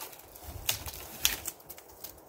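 Wooden poles being shifted by hand, knocking and rustling against each other, with a few sharp clacks about two-thirds of a second and a second and a quarter in.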